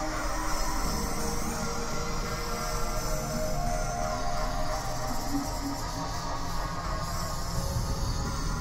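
Dark experimental horror music: a steady, dense electronic drone with sustained tones over a low rumble.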